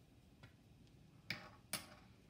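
Two light clicks about half a second apart, from a set of measuring spoons being set down on a kitchen countertop.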